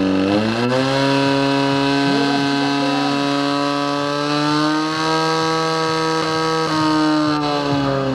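Portable fire pump engine revving up to full throttle in the first second, then running at a steady high pitch as it drives water through the hose lines to the two nozzles.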